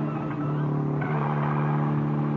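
Sound effect of a car engine running steadily at an even, low pitch.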